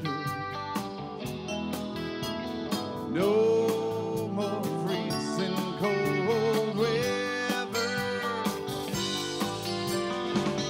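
Live rock band playing an instrumental break: electric guitars, bass, drums, keyboard and saxophone over a steady drum beat. A lead line of long held notes bends in pitch about three seconds in and again near the middle.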